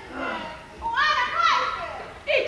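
Speech only: an actor's high-pitched voice speaking lines on stage, in two short phrases with a brief pause between them.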